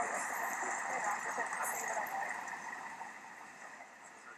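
Outdoor location sound from a video clip played back from an editing timeline: a steady wash of ambient noise that starts suddenly and fades down over the last second or so.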